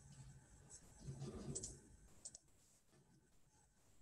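Near silence, broken about a second in by a short low rumble and a few faint clicks.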